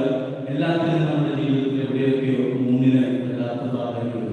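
A man's voice preaching continuously into a microphone, amplified over a loudspeaker.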